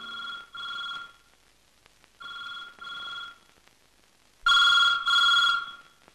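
Corded landline telephone ringing in a double-ring pattern: three pairs of short rings about a second apart, the last pair much louder than the first two.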